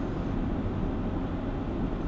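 Steady engine and road noise inside a moving car's cabin, a low even rumble.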